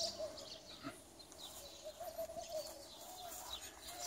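Faint birds chirping in short calls, over a faint, slightly wavering steady hum.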